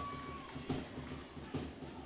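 Faint gymnasium ambience of a basketball game in play: low, even background noise with a few soft knocks.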